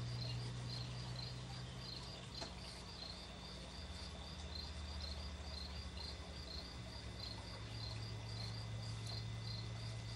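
A cricket chirping faintly and evenly, about three chirps a second, over a steady low hum that drops lower for a few seconds midway.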